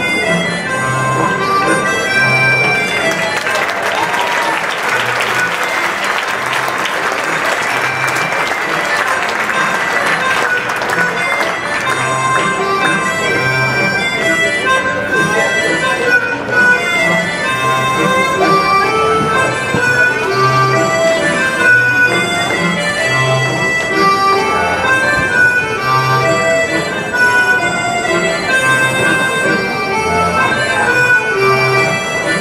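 Live folk dance tune with a reedy, accordion-like melody over a steady bass beat. An audience applauds over the music for several seconds, starting about three seconds in.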